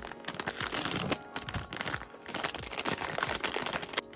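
A printed plastic blind-box bag being torn open by hand at its notch and crinkled as it is pulled apart, giving a dense run of rustling and crackling with short dips.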